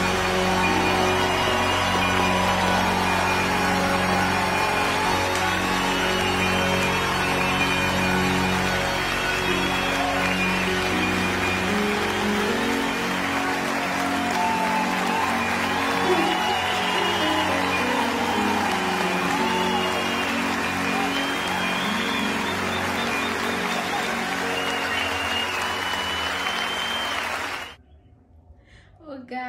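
Live audience applauding over held closing chords of the accompanying music; the sound cuts off abruptly near the end.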